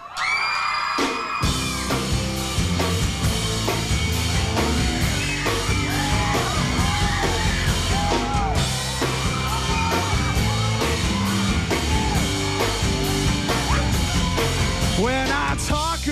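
Live rock band with one electric guitar, bass and drums kicking into an instrumental song intro about a second and a half in, after a held yell. Voices yell and whoop over the music.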